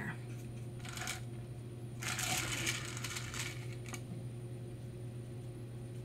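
Tabletop handling noise from a painting panel and brush: a short scrape about a second in, then a longer rustling scrape lasting about a second and a half. A steady low electrical hum runs underneath.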